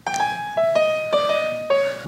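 Piano-like keyboard playing a short melody of about five single notes that step downward in pitch, each note ringing on after it is struck.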